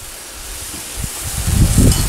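Pan sauce simmering on a gas stove with a steady faint sizzle. About a second in, low rumbling bumps build up and become the loudest sound.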